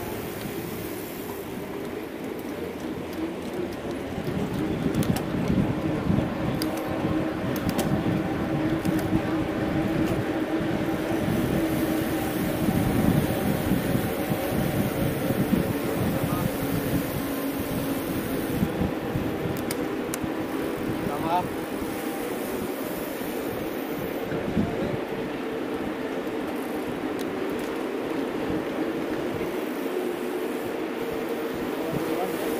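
A pack of mountain bikes rolling together on asphalt, heard from a bike-mounted camera, with indistinct voices of riders and spectators around and a few short clicks.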